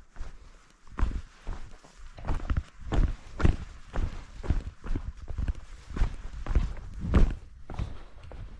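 Footsteps of a hiker walking down a rocky, gravelly mountain trail, about two steps a second, each a dull crunching thud.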